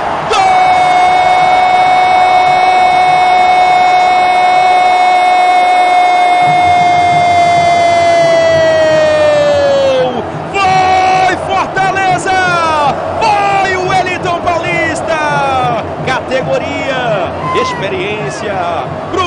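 A Brazilian football commentator's drawn-out goal shout, one loud held note of about ten seconds that sags and falls in pitch at the end, followed by excited shouted commentary over stadium crowd noise.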